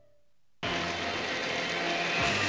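Near silence, then about half a second in a sudden, steady rush of storm sound effect: heavy rain and wind over a stormy sea.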